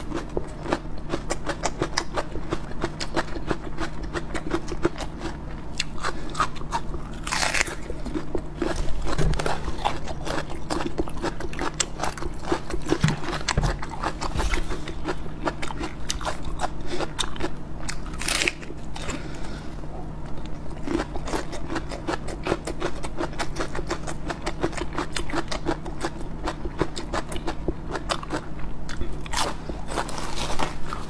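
Raw red onion being bitten and chewed: a dense run of crisp, wet crunches, with two louder bites, about seven and a half and eighteen seconds in.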